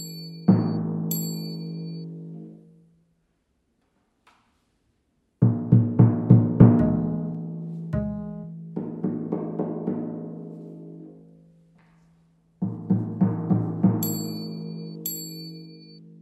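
Timpano struck with felt mallets: two single strokes that ring for a couple of seconds, then three groups of quick strokes, comparing strokes at the proper contact point, about 6 cm in from the rim, with strokes at a wrong spot on the head. Short high chimes sound twice near the start and twice near the end.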